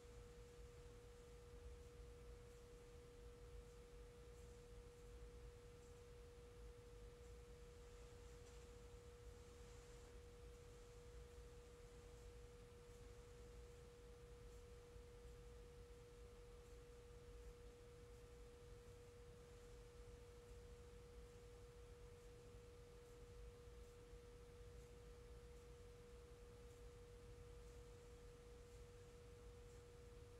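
Near silence: room tone with one faint, steady, unbroken pure tone, pitched somewhat below the middle of the piano range, over a low rumble.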